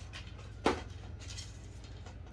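Telescopic carbon fishing rod being pulled out by hand, with one short click about two-thirds of a second in, over quiet room tone with a steady low hum.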